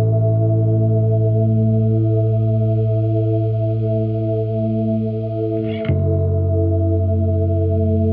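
Background music: sustained chords held steadily, moving to a new chord with a sharp attack about six seconds in.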